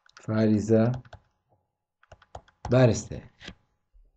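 A man speaking in two short phrases, with a few light clicks in the pause between them.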